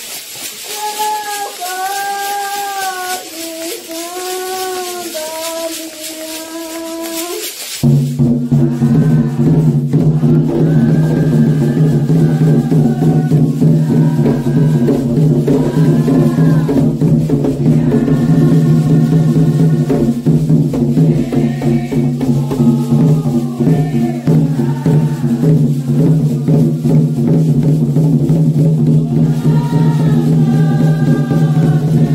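Candomblé ritual song: singing without accompaniment, then about eight seconds in, hand drums and percussion come in suddenly and loudly, keeping a dense steady rhythm under the singing.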